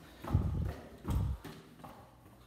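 Two dull, low thumps a little under a second apart, from movement close to a handheld phone's microphone.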